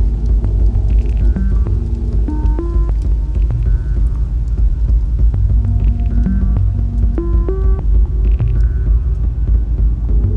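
Eurorack modular synthesizer patch playing a constant deep bass drone under a repeating sequence of short pitched notes that step upward. The phrase comes round about every five seconds, with faint ticks scattered through it.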